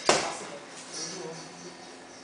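A boxing glove punch landing: one sharp smack right at the start, ringing briefly in a small room.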